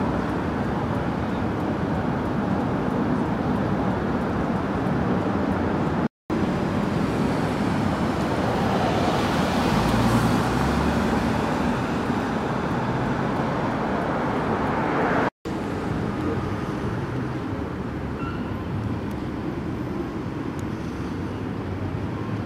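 Road traffic: cars driving by on a busy road, with one vehicle passing close and loudest about ten seconds in. The sound drops out briefly twice at cuts in the footage.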